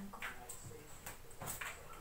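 Faint rustling of clothes being picked up and handled, a few brief soft rustles spread through the moment.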